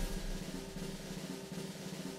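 Suspense snare drum roll, a steady roll over a low held tone, building to a score reveal.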